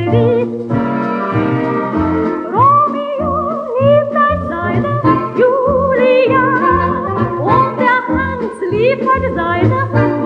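Digitized 78 rpm gramophone record of a variety dance orchestra playing a love song: a melody line with strong vibrato over a steady bass beat.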